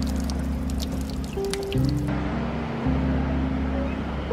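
Background music of sustained low chords that change every second or so. Over the first two seconds, water from a street drinking fountain splashes under it and stops suddenly about two seconds in.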